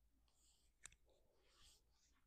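Faint rustling of hands moving over a cotton shirt and hair during a gentle pat-down, with one sharp click a little under a second in.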